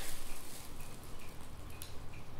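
A plastic bag rustling faintly, with a few light ticks, as fishing baits are taken out of it.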